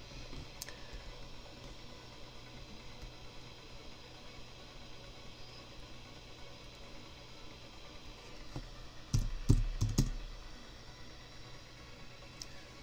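Computer keyboard and mouse clicks over a faint steady low hum: a single click about a second in, then a quick burst of about five clicks with dull knocks around nine to ten seconds in.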